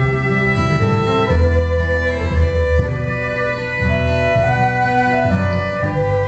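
Fiddle playing a lively Celtic instrumental tune, backed by a steady lower accompaniment.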